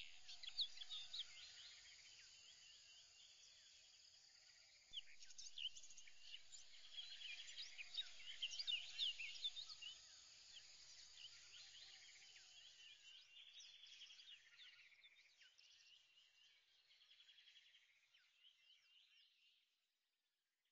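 Faint chorus of birds chirping and trilling, louder for a few seconds in the middle, then fading out near the end.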